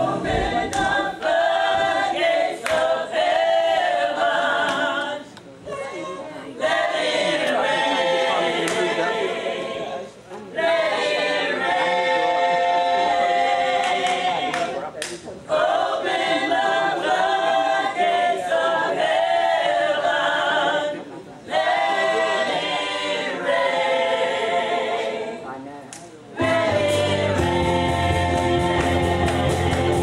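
A small group of women singing a gospel song in close harmony, a cappella, in phrases of a few seconds with short breaks between them. Bass and drums come back in near the end.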